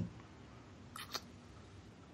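Near silence in a pause between speakers: faint room tone, with one short, faint sound about a second in.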